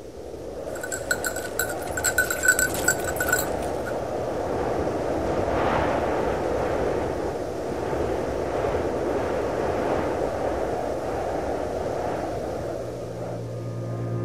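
Rushing, wind-like noise that swells up out of silence and then holds steady, with a short spell of rapid, high ringing ticks about one to three seconds in.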